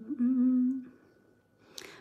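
A woman's closed-mouth 'mmm', one steady note held for just under a second at the start.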